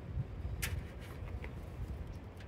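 Handling of a coiled power cable and its plug: one sharp click about two-thirds of a second in and a few faint ticks, over a low steady rumble.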